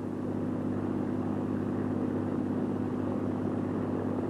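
Convair XFY-1 Pogo in flight: its turboprop engine and two contra-rotating propellers make a steady drone, with a low hum and a second, higher tone that hold level throughout.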